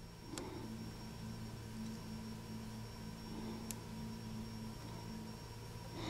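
Quiet room tone: a steady low electrical hum, with two faint ticks, one shortly after the start and one past the middle.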